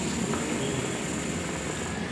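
Hookah water base bubbling steadily as a long draw is pulled through the hose, with a thin high whistle that stops as the draw ends.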